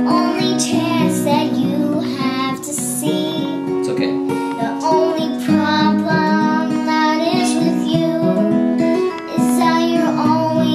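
A young girl singing an improvised melody over a strummed acoustic guitar.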